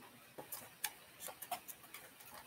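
Faint, irregularly spaced light clicks, about eight in two seconds, the sharpest a little before a second in.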